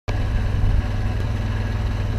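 A pressure washer's gas engine idling steadily, a low, even hum.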